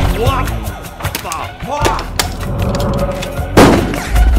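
Film fight soundtrack: a dark music drone under a string of sharp hits, with short vocal cries from the fighters, and one loud crashing impact near the end.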